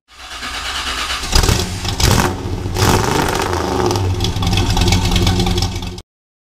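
Car engine revving, with sharp blips about a second and a half and two seconds in, then held at a steady high run until it cuts off suddenly.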